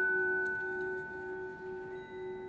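Vibraphone chord struck just before, left ringing and fading slowly as a few sustained metallic tones, the lowest one pulsing about four times a second.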